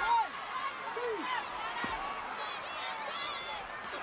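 Large stadium wrestling crowd shouting and yelling, with many voices overlapping and a few loud individual yells rising above the din.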